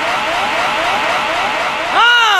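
An electronic sound effect: a whistle-like tone that sweeps upward over and over, about four times a second, over a steady hiss.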